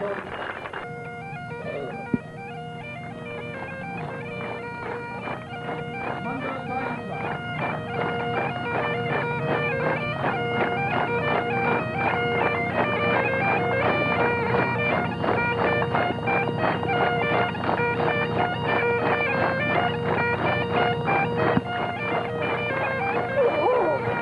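Highland bagpipes playing a tune over a steady drone, coming in about a second in and growing louder over the next few seconds. A single sharp knock sounds about two seconds in.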